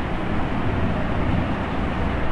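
Steady background noise: an even hiss with a low rumble, with no distinct strokes or tones.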